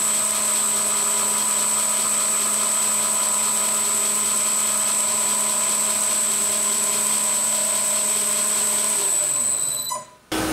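Schaublin 102 lathe running steadily with a high-pitched whine, then spinning down about nine seconds in.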